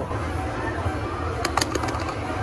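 Steady low hum of an arcade room, with a quick cluster of sharp clicks about one and a half seconds in.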